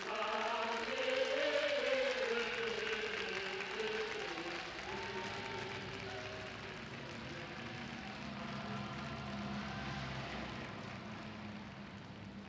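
Voices singing together with a wavering vibrato, strongest in the first few seconds, then fading away into a faint hiss near the end.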